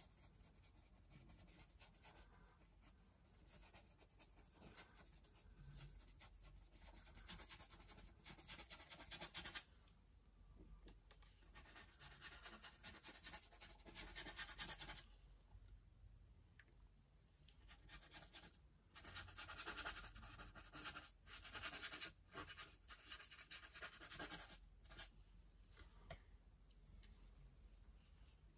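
Paintbrush scrubbing oil paint onto a canvas panel: a faint scratching of quick, repeated strokes. It comes in several stretches of two to three seconds, with short pauses between.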